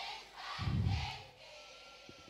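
A short pause in amplified live singing. Faint, muffled background noise swells low about half a second in, and a thin, faint steady tone is held near the end.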